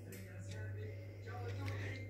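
Quiet room tone with a low steady hum and a few faint thin tones.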